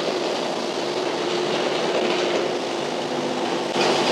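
Kubota mini excavator's diesel engine running steadily under load with a constant hum, its tracks rolling as the dozer blade pushes a pile of sand.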